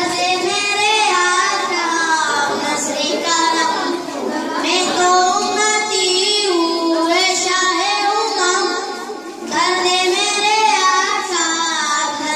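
Young boys singing a song into a hand-held microphone, held notes in phrases broken by short pauses.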